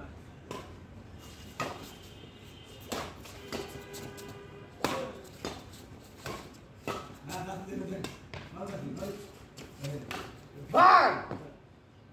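Badminton rackets striking a shuttlecock during a rally, a string of sharp hits about a second apart, with players' voices in between. A loud shout near the end is the loudest sound.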